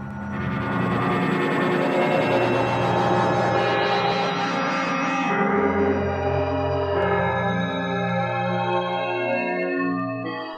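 Synth pad chords playing through Ableton Live's Chorus with the feedback raised and the second delay line switched in, which gives a buzzy, comb-filter-like shimmer. The modulation rate is being turned down from fast to slow as it plays, and the chord changes to a lower one about halfway through.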